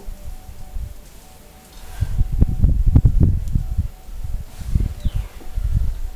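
A brush loaded with copper oxide wash being tapped to splatter it onto a bisque-fired raku pot. The taps come as irregular soft strikes over a low rumble, mostly in a burst starting about two seconds in.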